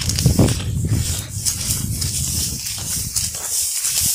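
Uneven low rumbling from a hiker walking uphill on a dry grassy trail close to the microphone, rising and falling about twice a second, over a steady high hiss.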